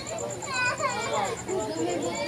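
High-pitched children's voices chattering and calling.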